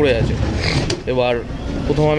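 A person speaking in short phrases outdoors, over a steady low rumble of background noise.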